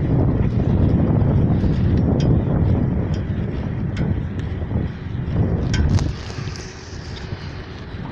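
Wind buffeting the microphone: a loud, rough low rumble with a few faint clicks, easing off about six seconds in.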